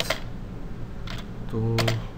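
Computer keyboard typing: a few separate keystrokes, one near the start, another about a second in and a couple near the end, as a commit message is typed.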